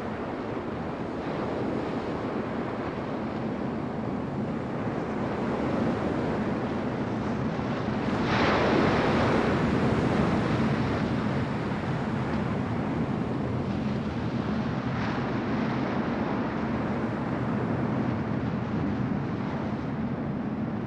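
Ocean surf on a beach: a continuous rush of waves, with a large wave breaking and washing in about eight seconds in and smaller surges later.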